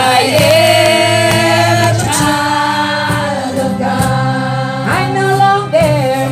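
A group of women singing a Christian worship song in harmony into microphones, holding long sustained notes.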